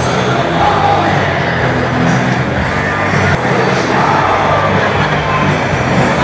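Loud music over a stadium sound system, heard from among a large concert crowd, with crowd noise mixed in.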